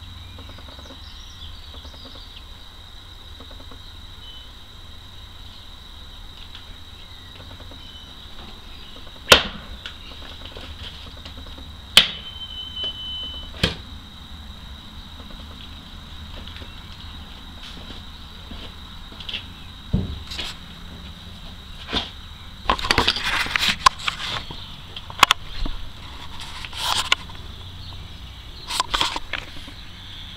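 Kukri chopping into a boot on a wooden log block: two hard, sharp strikes about nine and twelve seconds in, with smaller knocks after them. In the last third come irregular clattering and scraping handling noises.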